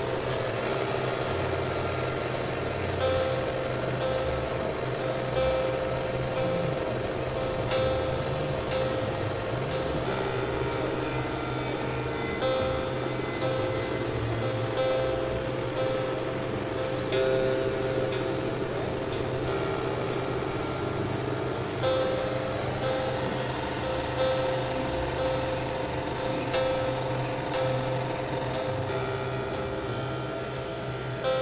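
Experimental electronic drone music: sustained synthesizer tones that switch every couple of seconds over a steady low hum, with a few sharp clicks.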